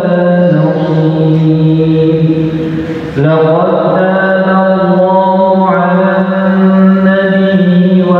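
A male imam reciting the Qur'an aloud in a melodic chant, holding long, drawn-out notes. There is a short break for breath about three seconds in.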